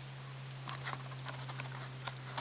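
Faint, light clicks and rustles of a crochet hook drawing yarn through stitches, over a steady low hum.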